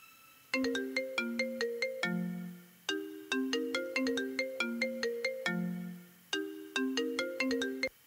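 Mobile phone ringtone for an incoming call: a short melody of ringing notes played three times, each round about three seconds long, stopping abruptly near the end as the call is picked up.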